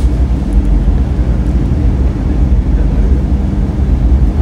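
Moving escalator in a shopping mall: a steady low rumble with a faint low hum under it.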